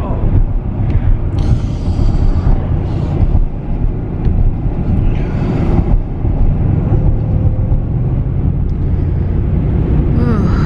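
Steady low road rumble inside a moving car's cabin, with a woman in labour breathing heavily and making low voiced sounds through a contraction, in two spells about a second and five seconds in.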